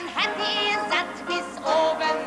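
A male singer singing a 1960s German Schlager song, with sustained vibrato notes over band accompaniment.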